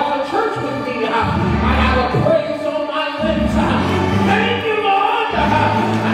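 Gospel choir singing over instrumental accompaniment, with deep sustained bass notes that change about once a second.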